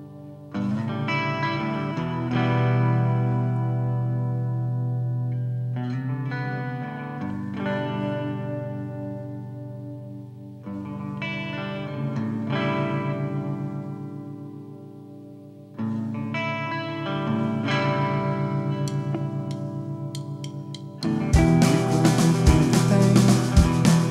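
Electric guitar through effects playing a slow intro: chords struck every few seconds and left to ring, with a quick pulsing in the sustain. About 21 seconds in, drums and the full rock band come in, louder.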